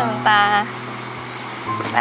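A young woman speaking a short phrase, light and smiling, over soft background music of held low notes that change pitch partway through.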